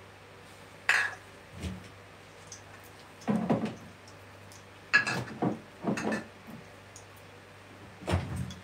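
Kitchen clatter: several separate clinks and knocks of glass and metal kitchenware, with a few seconds of quiet room between them.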